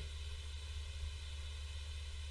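A quiet pause holding only the recording's background noise: a steady low hum with a faint hiss over it.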